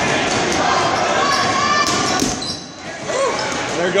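Dodgeballs being thrown and bouncing off a gym floor amid players' voices, with sharp impacts a couple of seconds in.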